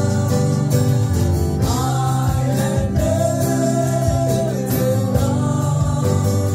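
Live worship band: a man singing a slow melody into a microphone, with a long held note in the middle, over strummed acoustic guitar and electronic keyboard chords.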